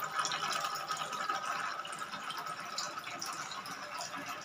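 Water splashing and trickling steadily in a small homemade cement cascade fountain, streams spilling from bowl to bowl into the basin below.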